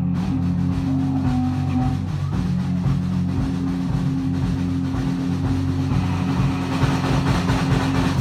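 Live rock band playing an instrumental passage on electric guitars and drums, over a long held low note, the sound getting brighter near the end.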